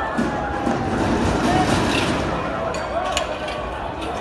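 A CAT excavator tearing into a building's sheet-metal canopy during a demolition, with a sharp crash a little after three seconds, under a crowd's loud voices.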